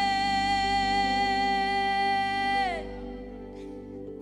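Live congregational worship singing: the singers hold one long note over steady instrumental backing. The note bends down and ends near the three-second mark, leaving the accompaniment alone briefly.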